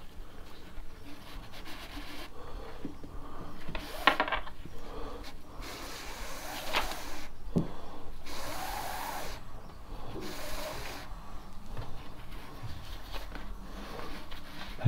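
Paracord rubbing as it is pulled through the loops of a knotwork mat, in several drawn-out strokes about a second long, with a few small clicks and knocks in between.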